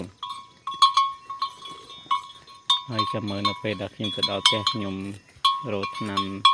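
A man talking in short phrases over a steady high ringing tone dotted with quick clicks.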